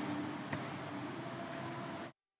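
Faint, fading tail of GarageBand's Grand Piano software instrument after notes played from the keyboard, with a light click about half a second in.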